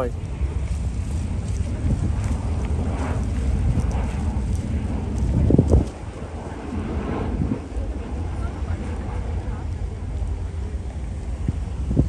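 Wind buffeting the microphone: a steady low rumble, strongest in a gust about five and a half seconds in.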